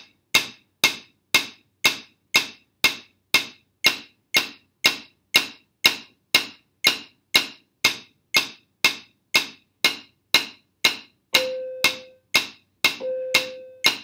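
Wooden drumsticks striking a rubber practice pad, single wrist strokes alternating hands in a steady beat of about two a second, 120 on the metronome. Near the end a short held tone sounds twice over the strokes.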